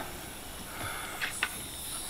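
Faint, steady hiss of air escaping from a turbocharged engine's intake pipework, pressurised for a boost leak test. The leak is at the dump valve. A couple of light clicks come from handling the fittings about halfway through.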